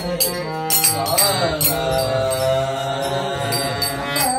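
Tamil devotional bhajan: voices singing held, wavering notes over a harmonium's steady reedy chords, with regular sharp percussion strikes keeping the beat.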